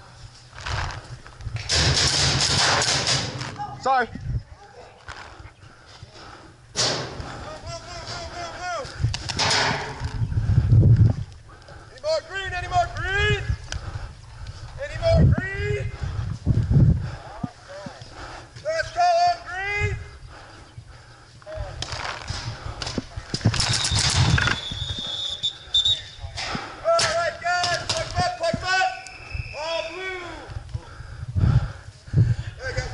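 Indistinct shouted voices of several people, calls that rise and fall in pitch, between loud bursts of noise.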